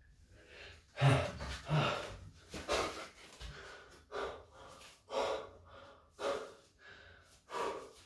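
A man panting hard after a set of pull-ups: loud, gasping breaths about once a second, the strongest about a second in.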